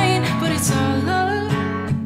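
Acoustic guitar strummed, with a man singing over it.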